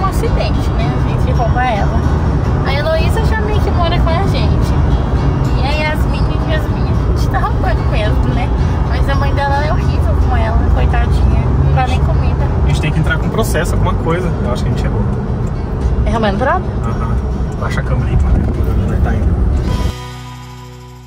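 Steady low rumble of road and engine noise inside a moving car's cabin, with background music carrying a wavering melody over it.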